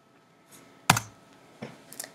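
A single sharp computer click about a second in, amid near silence, as the slideshow is advanced to the next slide.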